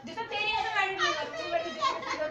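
Lively, high-pitched voices of women and girls talking and calling out.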